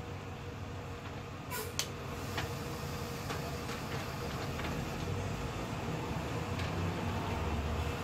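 A fan running with a steady low rumble and a faint hum, with a couple of light clicks about one and a half to two seconds in.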